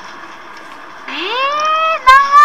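A child blowing a paper party blower (piropiro, fukimodoshi): a reedy tone starts about a second in, rises in pitch and then holds steady as a long blow.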